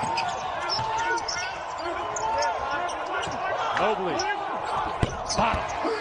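Live basketball court sound: a ball bouncing on the hardwood and sneakers squeaking in short high glides, with one sharp knock about five seconds in, under a commentator's voice.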